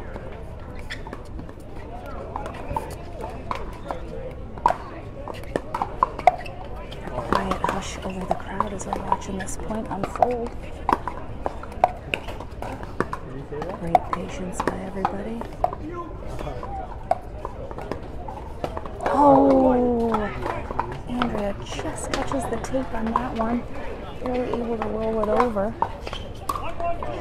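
Pickleball paddles striking a plastic pickleball during rallies: sharp pocks at irregular intervals, some in quick succession, with people talking at times.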